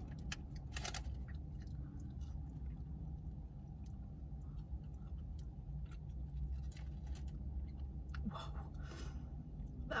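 A person chewing seasoned Taco Bell fries with the mouth closed, with many small wet mouth clicks, over a low steady hum.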